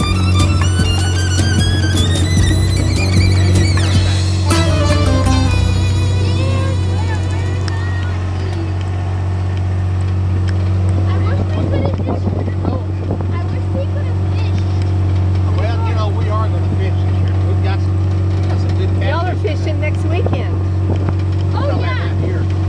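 Utility vehicle (RTV side-by-side) engine droning steadily from inside the cab as it drives across a pasture, with fiddle music playing over the first several seconds.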